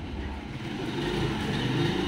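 A passing motor vehicle, its engine and road noise growing gradually louder.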